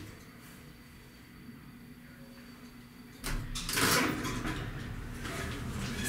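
Small passenger elevator car riding quietly, then about three seconds in a sudden clatter as the car's sliding doors start to open, followed by the steady run of the door mechanism.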